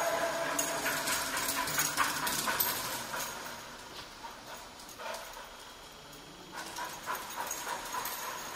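A victim recovery sniffer dog searching around parked cars, with scattered light clicks and rustles during its first few seconds, a quieter spell, then more clicks near the end.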